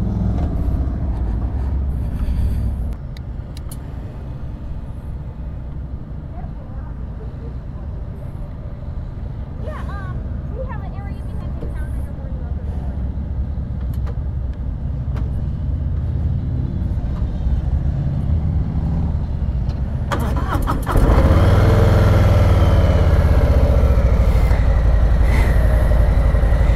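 Harley-Davidson Low Rider's V-twin engine idling with a steady low rumble. About 21 seconds in, another motorcycle's engine close by becomes much louder.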